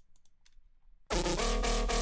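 A few faint computer clicks, then about a second in a dance-floor drum and bass track starts playing loud from the DAW: a deep sub bass under stacked synth notes with a quick, even rhythm of hits.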